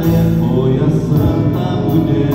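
Music: a man singing a devotional song into a hand-held microphone over backing music.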